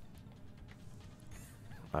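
Faint background music and sound effects from an online slot machine game as the reels spin, with a faint short gliding tone near the end.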